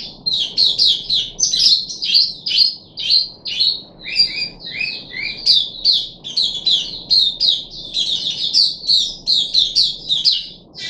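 White-eye singing a long, fast twittering song of short, high, downward-slurred notes, three or four a second, with a few lower notes dropped in about four to five seconds in.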